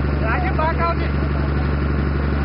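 A boat's engine running with a steady low drone, with voices in the first second.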